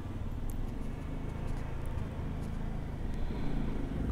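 A steady low background rumble, with a few faint, sharp clicks scattered through it.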